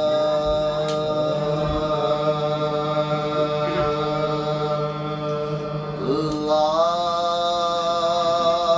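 Men's voices holding a long sustained note in a soz lament, unaccompanied by instruments; about six and a half seconds in the note steps up to a higher pitch and is held again.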